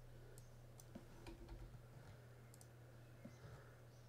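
Near silence: a steady low hum of room tone with a few faint, scattered computer mouse clicks.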